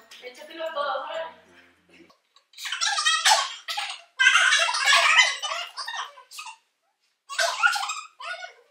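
Girls' voices laughing and exclaiming in loud outbursts, with pauses between, while one stuffs marshmallows into her mouth.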